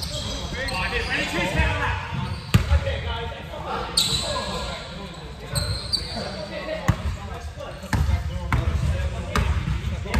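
A basketball bouncing on a hardwood gym floor, with irregular sharp knocks, mixed with players' shouts and voices echoing in the large gym.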